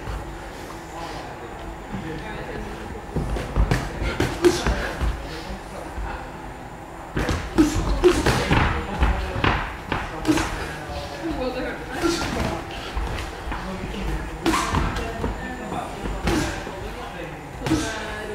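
Boxing gloves thudding as punches land on gloves and bodies during sparring. The hits come in quick flurries, busiest about seven to nine seconds in and again near the end.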